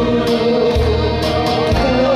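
A woman singing a Korean trot song into a microphone, holding one long note with vibrato over an amplified instrumental accompaniment with a bass line.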